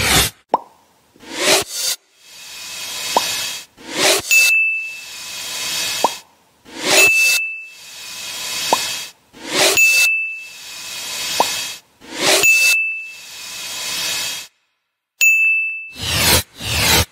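Editing sound effects: a repeating cycle of a swelling whoosh ending in a bright ding, five dings about every two and a half to three seconds, each with a short rising blip between. The dings mark checklist items ticking on.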